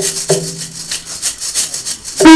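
A hand rattle shaken in a fast, even rhythm.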